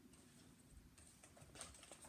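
Near silence, then faint paper rustling and small clicks in the second half as sheet music on an upright piano's music stand is handled.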